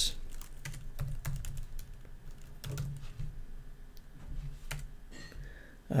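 Typing on a computer keyboard: a quick run of keystrokes in the first second or so, then scattered taps as text is deleted and retyped.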